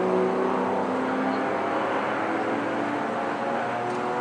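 Several go-kart engines running out on the track at once, their pitches rising and falling as the karts lap.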